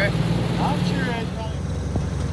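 Small utility vehicle's engine running steadily as it drives along a grassy path, its note shifting slightly partway through.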